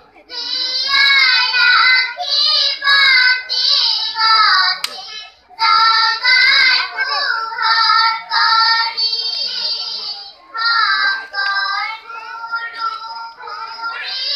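A group of children singing together in a series of short phrases with brief breaks between them.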